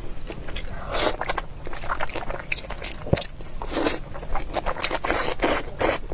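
Close-miked eating sounds of thick noodles in a spicy sauce: wet chewing and mouth clicks, with longer slurps about a second in, near the middle and near the end as the noodles are sucked in.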